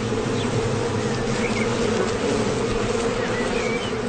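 Honeybees buzzing: a steady hum of several bees' wings, the tones wavering slightly against each other.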